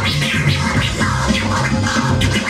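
DJ scratching a vinyl record on a Technics turntable, cut with a Pioneer DJM-909 mixer, over a hip-hop beat. The scratches come in quick rising and falling sweeps, several a second, over a steady bass beat.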